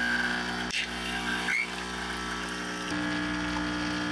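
Single-serve coffee machine brewing: its pump hums steadily as coffee streams into the mug, the hum changing tone about three seconds in.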